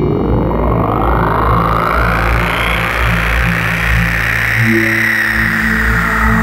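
Drum and bass track intro: a sweep rising in pitch over the first half, over sustained low bass notes, with new held synth tones coming in near the end.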